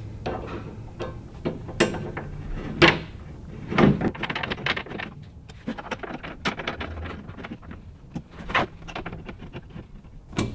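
Allen wrench turning and seating T-slot bolts on a steel molle panel: irregular metal clicks and knocks, a few sharper ones among a quicker run of light ticks in the middle.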